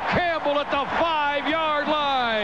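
Only speech: a male radio announcer's continuous play-by-play football commentary.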